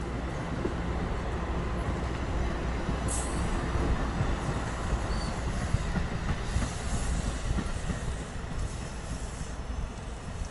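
New Jersey Transit multilevel passenger coaches rolling past and pulling away, steel wheels rumbling and clattering on the rails. A brief high wheel squeal comes about three seconds in, with more squealing in the second half.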